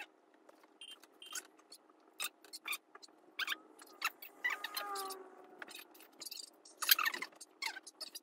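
Light, scattered rustles and clicks of a thin white cord being handled, with a brief wavering squeak about halfway through and a louder rustle near the end.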